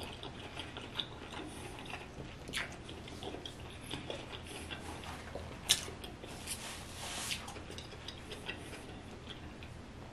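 Chewing a mouthful of sauce-coated seafood, with soft wet mouth clicks and smacks scattered through and one sharper click a little past halfway.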